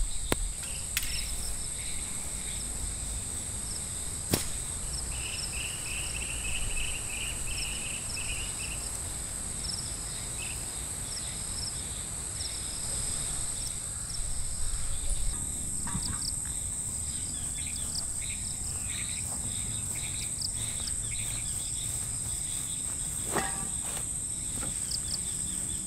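A steady, high-pitched drone of insects such as crickets. In the first few seconds it is broken by a few sharp knocks of a mallet driving a tent stake. A short chirping trill comes in for a few seconds near the start.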